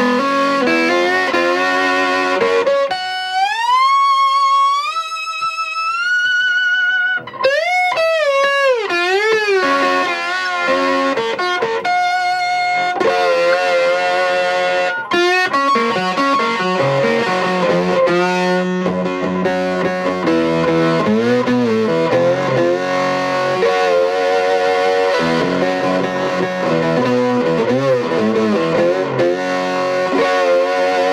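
McKinney lap steel guitar played with a slide through three vintage tube amps at once (a 1953 Fender Deluxe, a 1951 Gibson Maestro and a 1955 Fender Champ), overdriven. A single note slides upward in steps, then notes bend with wide vibrato, and fuller chords ring on after that.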